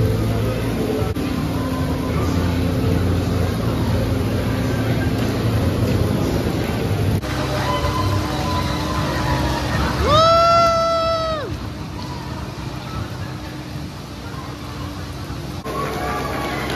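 A train on the Big Dipper wooden roller coaster rumbles into the station amid crowd chatter. About ten seconds in, a loud, held single-pitched call or tone sounds for over a second and falls away at the end.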